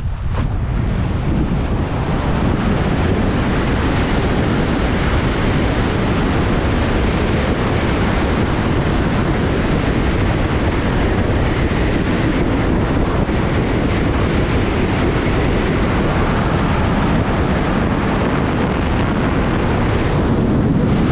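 Steady, loud wind rush on the microphone from the airflow of a wingsuit in full flight, building over the first second or two.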